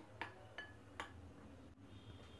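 Faint light clinks of a metal spoon against a glass bowl, a few in the first second, as dry gram flour is stirred with spices.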